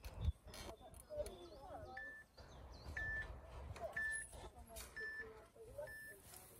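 Electronic race start timer beeping a countdown: five short, even beeps once a second, beginning about two seconds in, counting the rider down to the start of a downhill mountain-bike run. Birds chirp in the background.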